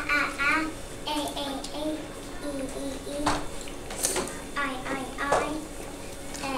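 A young child's voice saying the short and long vowel sounds one after another, reciting a vowel chart.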